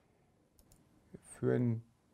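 Near silence broken by a faint click a little past the middle, then one short spoken syllable from a man's voice near the end.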